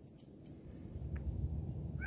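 Quiet outdoor background: a faint low rumble with a few soft clicks and rustles.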